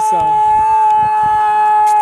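One long, loud, steady horn-like tone held at a single high pitch throughout.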